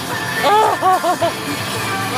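A woman laughing in four or five quick bursts over music playing in the car.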